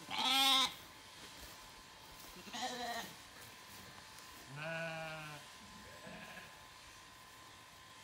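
Zwartbles sheep bleating: lambs calling for their freshly shorn mother, whom they don't recognise by look or smell. There are four separate bleats: a loud one at the start, a fainter one, a deeper one near the middle and a faint last one.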